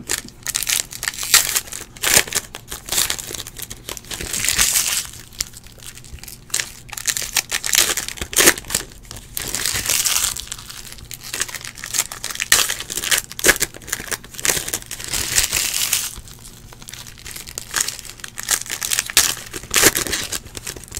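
Foil wrappers of Panini Prizm football card packs crinkling and tearing as the packs are ripped open by hand, in repeated irregular bursts.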